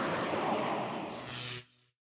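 Fading tail of an outro sound effect: a broad rushing noise that dies away slowly, then cuts off to silence about one and a half seconds in.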